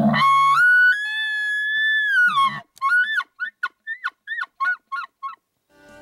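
Bull elk bugling: a low start rising in steps into a long high whistle held for about two seconds, which falls away into a grunt, then a quick run of about ten short chuckles.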